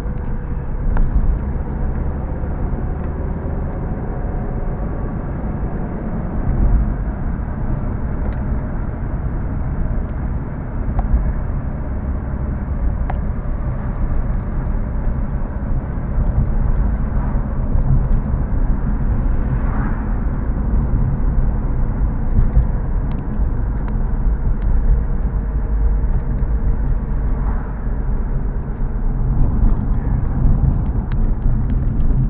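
A car driving, heard from inside the cabin: a steady low rumble of engine and tyres on the road.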